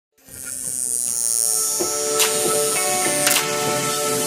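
Small DC motor on a homemade robot running with a steady high-pitched buzz that fades out about three seconds in. Background music comes in about two seconds in, with a couple of sharp hits.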